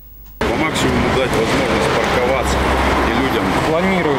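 Street noise: road traffic running under indistinct voices of people talking, starting abruptly about half a second in.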